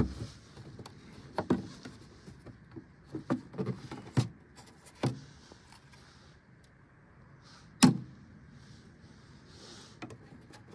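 Sharp plastic clicks and snaps as the hinged cover of an outdoor breaker box is unclipped and the circuit breaker is handled. One loud snap comes at the start and another about eight seconds in, with a few lighter clicks between.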